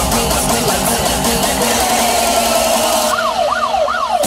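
UK happy hardcore dance music with a steady beat. Near the end the beat thins out and a siren-like synth wails up and down several times as the track builds.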